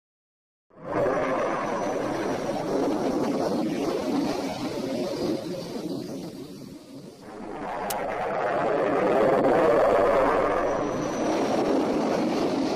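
Jet aircraft fly-by sound effect: a steady rushing jet-engine noise that starts about a second in, dips briefly about seven seconds in, then swells again to its loudest near the end.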